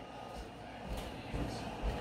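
A few faint, soft low thumps about half a second to a second apart, like items being handled and set down on a counter.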